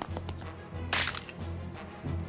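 A sharp swish sound effect from an anime soundtrack about a second in, like a blade cutting the air, over low pulsing background music.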